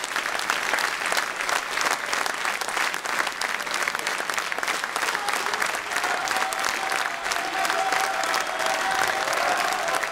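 Audience applauding, a steady run of many hands clapping.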